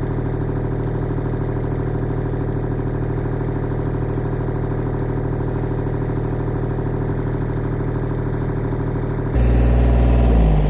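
Compact tractor's engine idling steadily with a low, even hum. Near the end it jumps suddenly louder and fuller.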